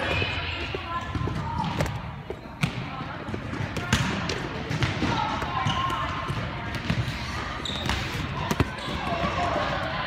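Balls bouncing and thudding on a gym floor in an echoing hall, about a dozen irregular impacts, with background voices.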